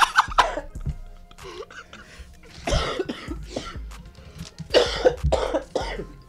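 A person coughing and clearing his throat while trying to get down a mouthful of cinnamon-sugar churro he says he can't swallow, in three harsh fits: at the start, about three seconds in, and again about five seconds in.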